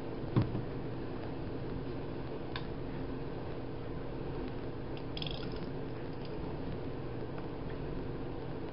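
Small plastic paint cups and bottles handled on a tabletop: a sharp knock about half a second in as one is set down, a lighter tap a couple of seconds later, and a brief high squeak about five seconds in, over a steady low background hum.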